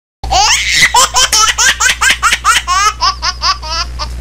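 High-pitched laughter: a rapid run of short syllables, about five a second, thinning out toward the end, over a steady low hum.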